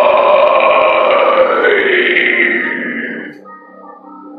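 A metal vocalist's long harsh scream into a handheld microphone over the song's loud backing track, dying away a little after three seconds. After it, quieter music with a few sustained notes carries on.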